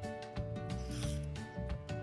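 A short rasp of hand-sewing thread being drawn through cotton fabric about a second in, over soft background music with a steady beat.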